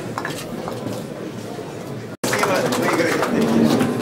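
Large wooden chess pieces knocking on a wooden board over a crowd murmur. About two seconds in, the sound drops out for an instant and gives way to louder crowd chatter.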